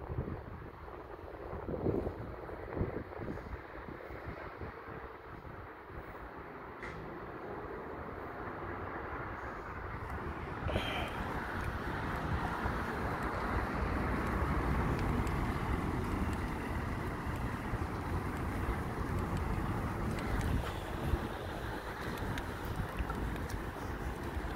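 Outdoor noise with wind rumbling on the phone microphone and a few light knocks of handling early on; a steady noise swells about halfway through and stays louder before easing near the end.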